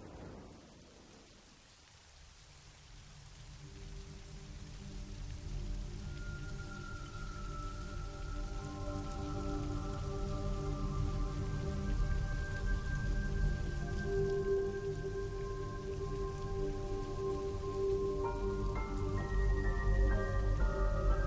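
Steady rain, with a film score of long held notes fading in after a few seconds and swelling louder, adding more notes near the end.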